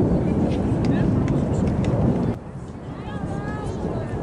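Low rumble of wind on the microphone at an outdoor lacrosse field, with scattered sharp clicks and faint voices. About two and a half seconds in, the sound cuts abruptly to a quieter background with distant voices.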